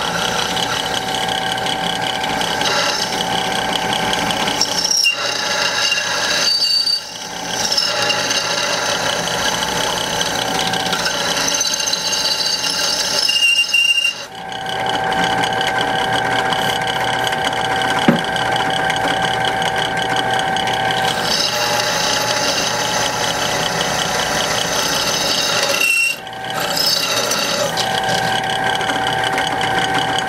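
Drill press driving a twist bit through steel plate: a steady mechanical whine of the cutting bit and machine, broken by three brief drops where the cut eases off. Near the end of the cut it squeaks, a sign that the bit has run short of cutting oil.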